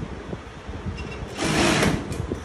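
Industrial lockstitch sewing machine stitching fabric, with a short, louder run of about half a second near the end.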